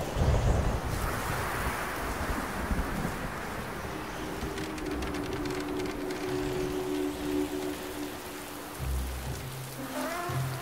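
Steady rain falling, with a low rumble near the start and again near the end, under soft background music whose held notes come in through the middle.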